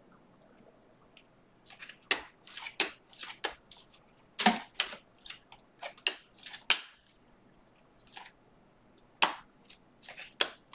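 Stack of Panini Mosaic football cards being flipped through by hand, the glossy cards sliding and snapping against one another in a quick run of short crisp swishes and clicks. It starts about a second and a half in, pauses near the end, then gives a couple more clicks.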